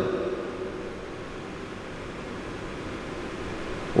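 A steady, even hiss of room noise between sentences of a talk, with the tail of the speaker's voice dying away just after the start.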